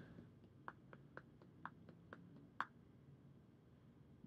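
Faint, short clicks, about eight of them at roughly four a second, as a Vision Vivi Nova clearomizer on its e-cigarette battery is shaken upside down in the hand to test it for leaks. The clicks stop after a couple of seconds, leaving near silence.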